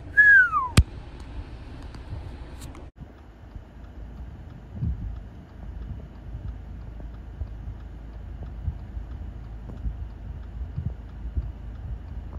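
Steady low rumble of wind buffeting the microphone, with scattered soft knocks from the phone being handled. Before it, a brief falling whistle-like tone and a sharp click are heard right at the start.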